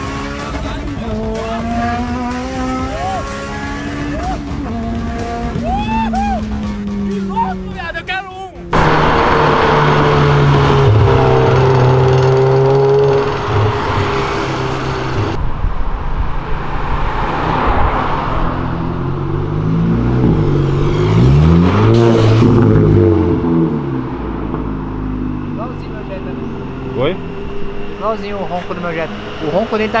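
Turbocharged Honda Civic Si engine revving, its pitch rising and falling, heard from inside the cabin. After a sudden cut, a car engine on the street runs loud and steady, then revs up and down again.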